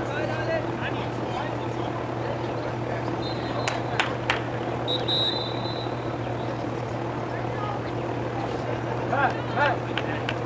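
Outdoor soccer-field ambience: a steady low hum under distant voices, with a few sharp knocks about four seconds in, a short thin high tone just after, and a shouted voice near the end.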